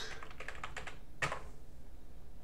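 Typing on a computer keyboard: a quick run of keystrokes, then one louder key press about a second and a quarter in as the search is submitted.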